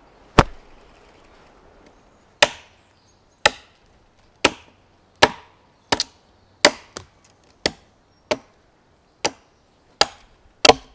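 Axe chopping wood: one sharp blow, a two-second pause, then a steady run of strikes at roughly one a second.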